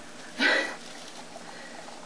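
A dog lapping water from a bowl, faint, after a woman says "slurp" about half a second in.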